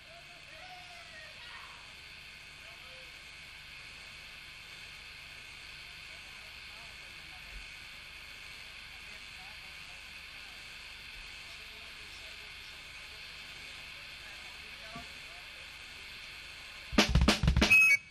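Steady hiss from the stage amplifiers and the live recording, with faint voices, then about a second before the end a short, loud burst of drum-kit hits on snare and kick.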